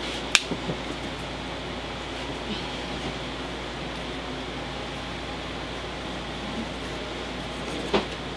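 Steady hum and hiss of room noise, with one sharp click about a third of a second in.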